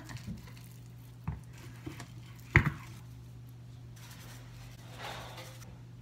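Hands rubbing olive oil over the cut flesh of a spaghetti squash half, with soft squishing and handling noises and one sharp knock about two and a half seconds in.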